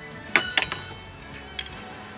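Stainless steel cocktail shaker clinking as its cap is fitted on: a few sharp metallic clinks with brief ringing, the first the loudest.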